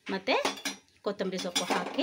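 A metal utensil clinking against a steel cooking pot, with a voice speaking over it in two short phrases.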